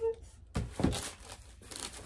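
A cardboard shipping box being opened by hand: a few short tearing and crinkling sounds of cardboard and packing.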